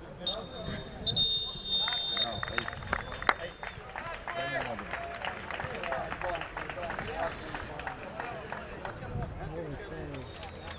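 Referee's whistle blowing: a short toot, then a longer blast of about a second, followed by players shouting on the pitch.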